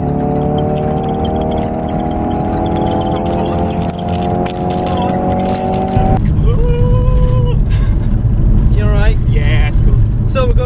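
Ford Focus RS 2.3-litre EcoBoost four-cylinder engine heard from inside the cabin under hard acceleration at speed, its note climbing slowly and steadily. About six seconds in it gives way to a louder, deeper rumble of engine and road noise.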